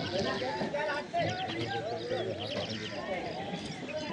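Outdoor background of distant voices mixed with many short bird calls and quick runs of chirps.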